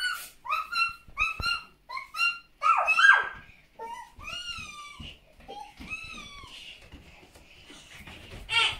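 High-pitched puppy yaps and whimpers from a toy dog: a quick run of short, near-identical yaps, loudest about three seconds in, then two longer rising-and-falling whines.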